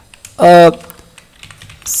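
Computer keyboard being typed on, soft scattered key clicks. A short loud spoken syllable about half a second in.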